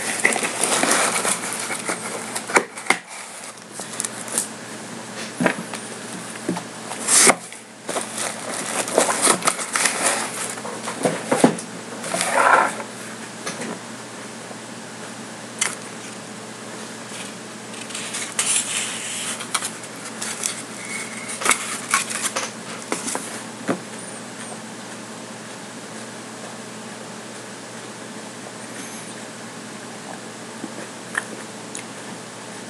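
Chewing a crisp raw unripe Amazon chili pepper (a Capsicum chinense), a run of sharp crunches and wet mouth noises that die away after about twenty-odd seconds.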